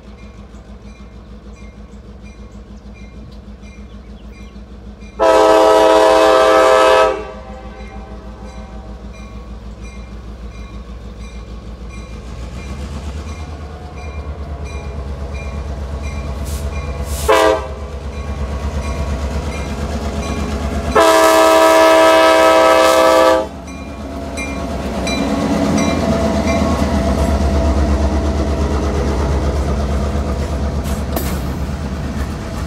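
Norfolk Southern EMD diesel locomotive approaching and passing: its multi-chime air horn sounds a long blast about five seconds in, a short one near 17 seconds and another long blast around 21 seconds, while the engine rumble grows louder. Near the end the freight cars roll by close up with a steady rumble and wheel clatter.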